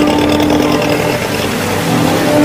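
A small boat's engine running as it pulls away from the dock, a cartoon sound effect. Background music fades out within the first second.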